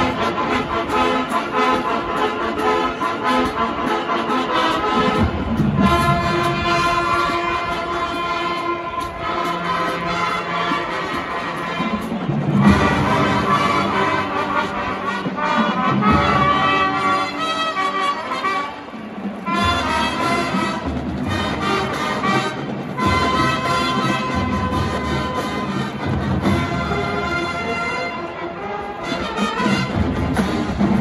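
Marching band playing a brass-led arrangement: trumpets and trombones carry held chords and melody lines that move in phrases every few seconds.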